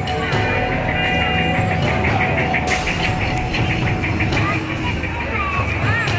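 Music mixed with arcade noise: electronic game tones and quick repeated beeps over the chatter of a crowd, steady and fairly loud throughout.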